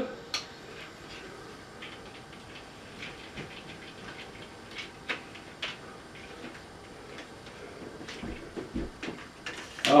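Projector cooling fan whirring faintly and steadily after switch-off, cooling the bulb, with scattered clicks and knocks from a tripod being taken down.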